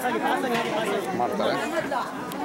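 Several people talking at once: overlapping chatter of women's voices close by.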